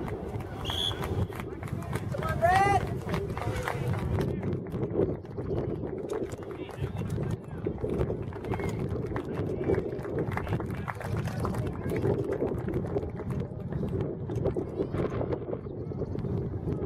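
Indistinct voices of spectators and players at a youth soccer game, with a loud high-pitched shout about two and a half seconds in and scattered small knocks.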